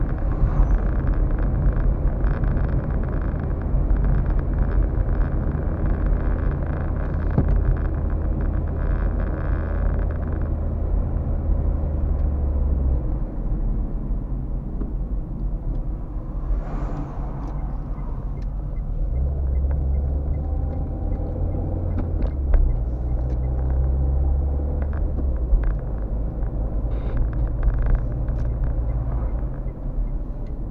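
Car running along the road heard from inside the cabin: a steady low engine and tyre drone that shifts a few times. About halfway through, an oncoming lorry passes with a brief whoosh.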